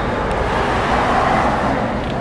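Steady outdoor road-traffic noise, a low rumble that swells slightly about a second in.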